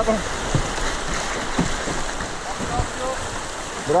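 River rapids rushing steadily over rocks right beside the canoe, a continuous hiss of whitewater, with a few soft low knocks.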